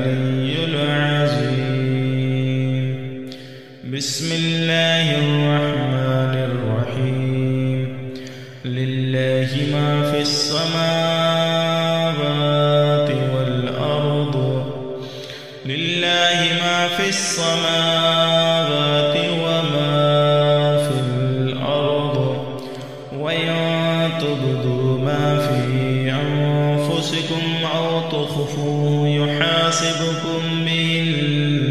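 A man chanting Quranic recitation in Arabic (tajweed), in long, slow melodic phrases with drawn-out held notes. There are short breaks for breath every five to seven seconds.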